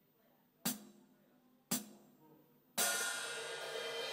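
Opening of a dangdut koplo band track: two sharp percussive taps about a second apart, then a ringing cymbal with a held chord under it starting near the end.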